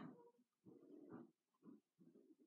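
Faint, short low vocal sounds from a person, three of them in about two seconds, too quiet to make out as words.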